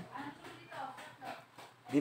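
A person's voice at low level, soft and broken.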